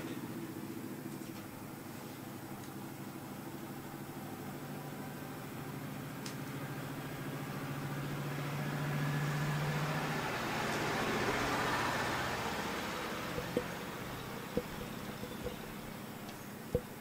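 A motor vehicle's engine, a steady low hum that swells to its loudest about ten seconds in and then fades as it passes. A few light clicks follow near the end.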